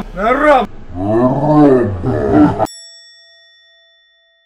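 Edited-in comic sound effects: a pitched, voice-like swoop that rises and falls, once more, then one longer, deeper drawn-out swoop, then a sudden bell ding a bit before three seconds in that rings and fades away to silence.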